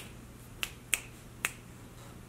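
Three quick finger snaps over about a second.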